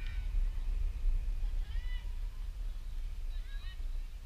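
Distant voices calling out twice, short high-pitched shouts about two and three and a half seconds in, over a steady low rumble.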